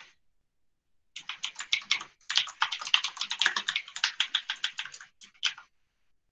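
Typing on a computer keyboard: a quick run of keystrokes starting about a second in, with a brief break near two seconds, trailing off into a few single key presses near the end.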